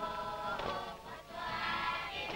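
A choir singing long held chords, dipping briefly about a second in before the voices come back in.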